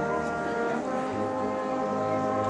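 High school marching band playing, its brass section holding sustained chords, with a low note joining about a second in.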